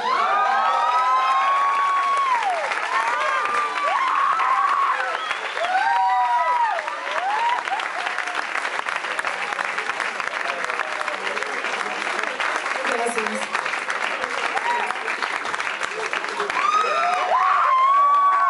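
Audience clapping and cheering as a rock song ends, with rising-and-falling whoops and shouts over the applause, mostly in the first several seconds and again near the end.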